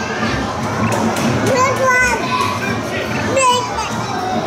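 Small children's high voices calling out and babbling over the constant chatter and bustle of a busy children's play hall.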